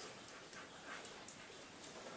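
Faint chalk writing on a blackboard: a few short, light scratches and squeaks of the chalk over a quiet room hiss.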